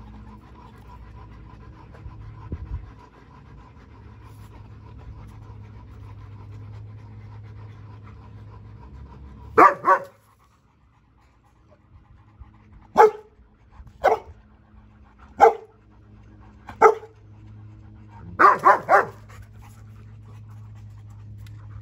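German Shepherd giving play barks at a young Boerboel: a quick double bark about halfway in, then single barks every second or so, and a rapid run of three near the end.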